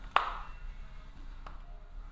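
A loud, sharp mechanical click with a brief ring, then a second, fainter click about a second and a half later, over a low rumble.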